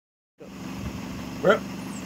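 Steady hum of a car engine idling, coming in almost half a second in; a man says "Well" about one and a half seconds in.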